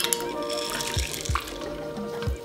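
Soft background music with a few light clicks and wet splashes as frozen peas are tipped from a bowl into a pot of soup broth.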